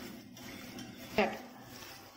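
Faint squishing of a hand mixing marinated chicken pieces in a steel pot, with one short vocal sound about a second in.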